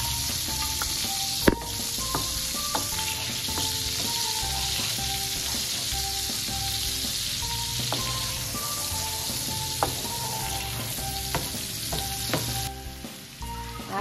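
Minced garlic sizzling in melted butter and oil in a frying pan, with a steady hiss and a few sharp knocks, the loudest about a second and a half in. A soft music melody plays underneath.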